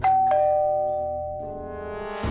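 Electric doorbell chiming a two-note ding-dong: a higher note, then a lower one a moment later, both ringing on and slowly fading, over background music.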